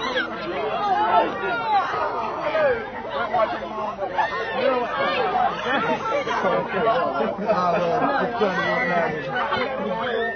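A group of teenagers chattering and calling out at once, many overlapping voices with no one voice standing out.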